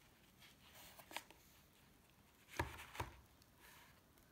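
Pages of a children's finger-puppet board book being handled and turned: a faint rustle about a second in, then two soft thumps near the end.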